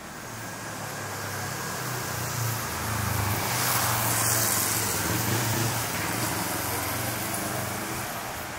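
A car driving past on a city street, its engine and tyre noise swelling to loudest about halfway through, then fading.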